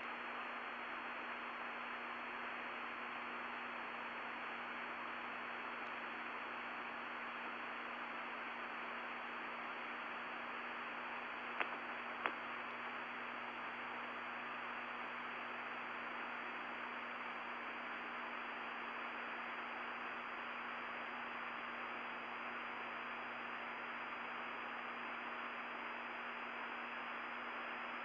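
Steady hiss of an open audio channel with a constant low hum and a faint high whine. Two small clicks come about twelve seconds in.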